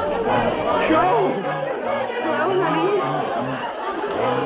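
A crowd of many voices calling out over a band playing a bouncy floor-show tune with a steady two-note bass line.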